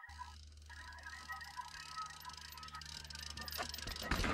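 Mountain bike coming down a rocky, rooty dirt trail: tyre noise and rattling clicks from the bike grow louder as it nears, peaking near the end as it passes close by.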